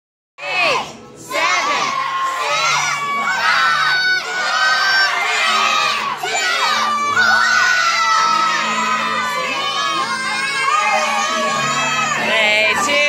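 A crowd of children shouting and cheering, many voices at once, starting about half a second in and staying loud throughout.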